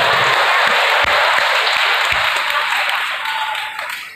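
Audience applauding as the song's music stops just after the start; the clapping fades away near the end.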